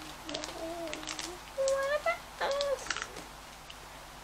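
A child humming or vocalising a few wordless held notes, the loudest about halfway through, with light clicks and crinkles of plastic packets being handled.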